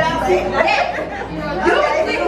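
Overlapping chatter of several women talking at once, no single voice clear.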